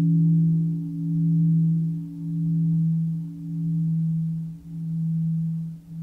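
A large Buddhist bell's long, low hum dying away after a strike, its tones beating so the sound swells and fades about once a second. This is the bell sounded between verses of a bell-invitation chant.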